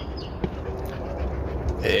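A pause in a man's talk filled by a steady low background rumble, with one faint click about half a second in; his speech picks up again at the very end.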